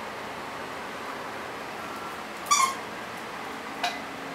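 A dog gives one short, high-pitched yelp about halfway through. A small click follows near the end.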